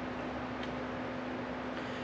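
Steady room tone: a ventilation hum with a low steady tone running through it.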